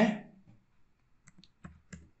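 About four light clicks from a computer keyboard and mouse, bunched into the second half.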